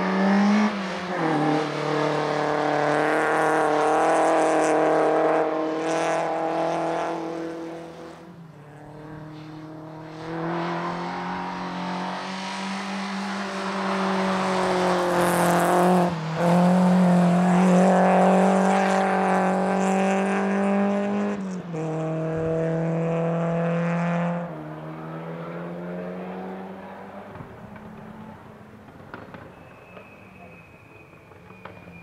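Citroën Saxo VTS's 1.6-litre 16-valve four-cylinder engine worked hard through an autoslalom, revs climbing and dropping sharply several times with throttle lifts and gear changes. The engine note fades near the end as the car pulls away.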